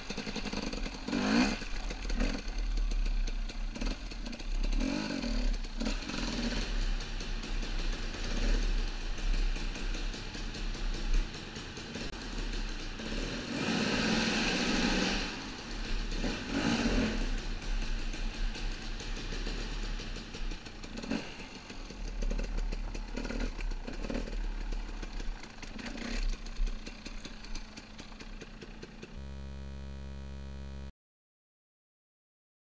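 Two-stroke Husqvarna TE 300 enduro motorcycle engine running under the rider, revving up and down with the throttle, with the loudest bursts about halfway through.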